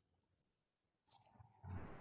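Near silence on a video-call audio feed, then a faint rushing noise beginning near the end.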